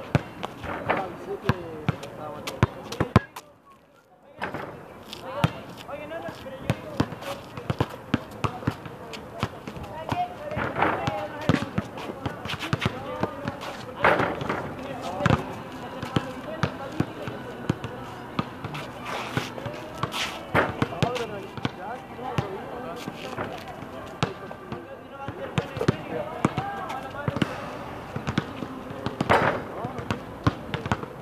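A basketball bouncing repeatedly on pavement in irregular sharp thuds, with players' voices calling out over it. The sound drops out briefly about three seconds in.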